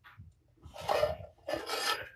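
A kitten's claws scrabbling against the sides of a bowl on a kitchen scale as it tries to climb out, in two scratchy bursts, the second near the end.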